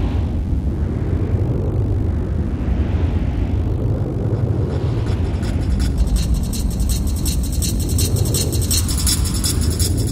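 Wind buffeting an action camera's microphone, with the rumble of a Dirtsurfer's wheels rolling over hard sand, steady and loud. A thin high hiss joins about halfway through.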